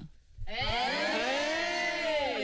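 Several voices join in one long drawn-out 'oooh', rising and then falling in pitch, starting about half a second in after a brief hush.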